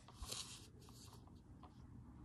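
Faint scratch of a fine-tip ink pen drawing across a paper tile: a short stroke about a quarter second in, then a few light ticks as the nib touches down.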